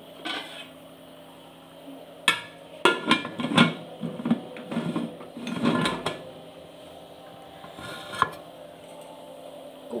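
Aluminium pressure cooker lid being put on and closed: a run of sharp metal clanks and scrapes in the middle, then one more click later.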